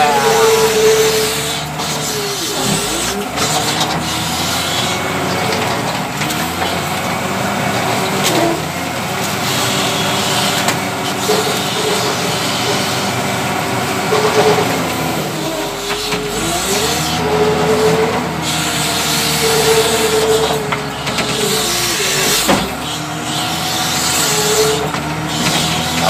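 W130 wheel loader's diesel engine running under load, heard from the cab, its engine speed dropping and picking back up several times as the machine works.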